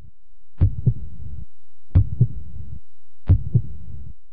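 Heartbeat sound effect: three low lub-dub double beats about 1.3 seconds apart, over a faint steady hum.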